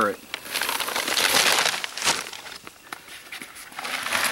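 Dry concrete mix with gravel in it hissing as it pours out of a paper sack into a plastic bucket, the sack crinkling and rustling as it is shaken out. There is a sharp knock about two seconds in, then quieter scattered rustling.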